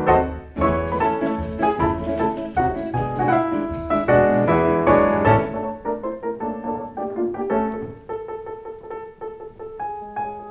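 Piano playing a Latin American tune. Full and loud with low bass notes through the first half, then about halfway the low notes drop away and it goes on more quietly and sparsely in the upper range.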